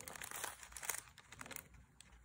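Faint scratchy brushing of a flat paintbrush dabbing paint onto wet watercolor paper: a run of short strokes that thin out in the second half.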